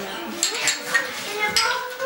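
Small ceramic drinking bowls clinked together in a toast: a few sharp, bright clinks, with voices under them.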